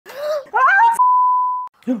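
A woman's excited speech is cut by a steady, single-pitch censor bleep about a second in, lasting under a second and stopping abruptly, before her speech resumes near the end.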